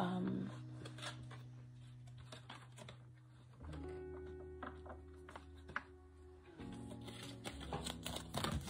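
Soft background music of slow, sustained low chords that change about every three seconds, with faint clicks of tarot cards being handled as a card is drawn.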